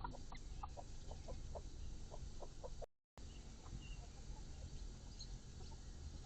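Bird calls: a series of short, low-pitched notes, a few a second, over a steady low rumble, with a brief total dropout about halfway through.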